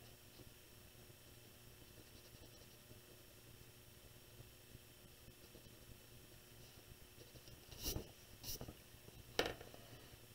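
Faint pencil strokes on drawing paper, then three short scrapes and knocks near the end as drafting tools are moved on the paper.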